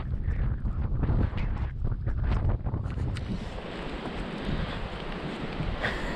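Stormy wind buffeting the camera's microphone in gusts, a continuous rumbling noise heaviest in the first half, easing to a lighter hiss later.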